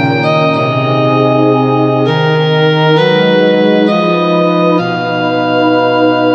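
Instrumental karaoke backing track in its introduction: held electronic keyboard chords, organ-like, changing every second or so, with no singing.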